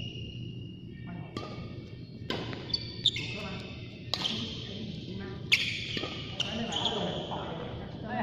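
Badminton rackets striking a shuttlecock in a rally: a string of sharp hits about a second apart, echoing in a large hall, with short squeaky tones, likely shoes on the court floor, after several of them.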